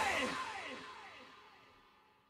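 The fading tail at the end of a rock song: a repeating echo of falling-pitch sweeps, about five a second, each fainter than the last, dying away about a second in.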